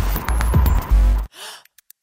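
Electronic music with a heavy bass beat cuts off abruptly a little past halfway. A short breathy gasp follows, then sparse, irregular sharp clicks in near quiet.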